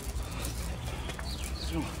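A bird calling twice, two short chirps that fall in pitch, over a low steady background rumble.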